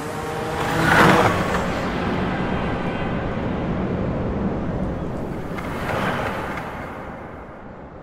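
City traffic ambience: a steady rush of street noise with two passing swells, one about a second in and a second near six seconds, fading down toward the end.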